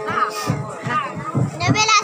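Several people's voices, children's among them, talking and calling out over one another.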